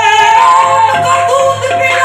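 Qawwali singing with harmonium accompaniment: a loud lead voice sliding and ornamenting over steady held harmonium notes.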